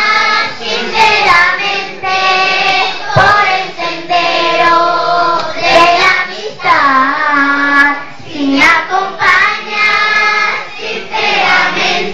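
A children's choir of young girls singing together, with a few long held notes.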